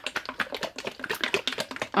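Plastic bottles of acrylic pouring paint being shaken fast: a rapid, irregular clatter of plastic clicks and knocks.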